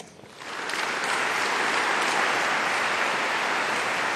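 Audience applauding, swelling in during the first second and then holding steady.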